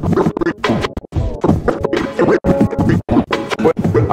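Turntable scratching played through a Vestax Controller One: a record is pushed back and forth by hand into short, sliding-pitch cuts that are chopped off abruptly, over and over.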